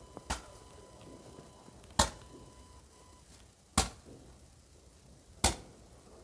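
Fireworks going off: four sharp bangs at an even spacing of a little under two seconds, each with a short echoing tail.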